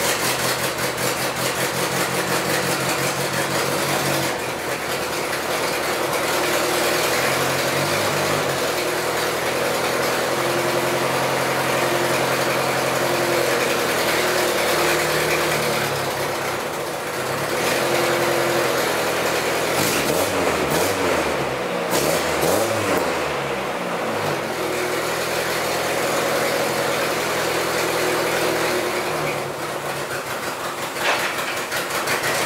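Chevrolet Corsa 2.0 8-valve engine running just after a start, its revs rising and falling several times. The exhaust blows loudly at a loose manifold whose two lower studs were left untightened, so it sounds as if it were running open.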